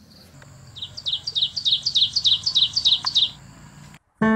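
A songbird singing a quick run of about a dozen high chirping notes, about five a second, with a thin steady high tone behind it.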